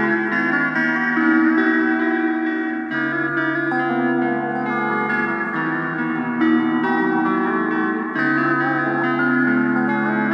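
Rock-blues guitar instrumental with echo on its sustained notes; the chords change every few seconds.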